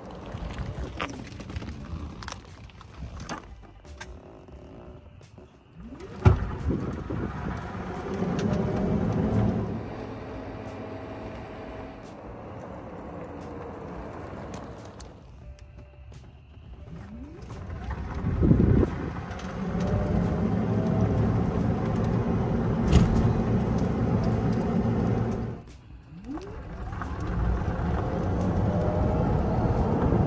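Electric drive motor of a 2008 Club Car DS golf cart, loaded with over 800 pounds and with its controller's speed and acceleration maxed, whining as it accelerates hard up a steep hill, with road noise under it. The whine rises in pitch at each of three hard starts, about six seconds in, at eighteen seconds and at twenty-six seconds, and then holds steady while the cart climbs.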